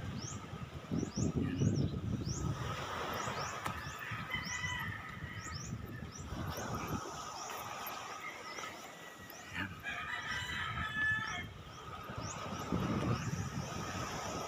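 Small birds chirping over and over in short rising chirps above steady outdoor background noise, with a longer call of several stacked tones about ten seconds in.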